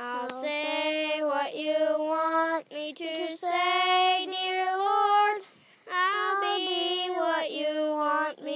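A high singing voice carrying a slow melody in long held notes, with short breaks between phrases.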